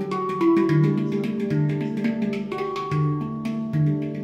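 Handpan played by hand: struck steel notes ring on and overlap, with a low note coming back about once a second under quicker taps and higher ringing notes.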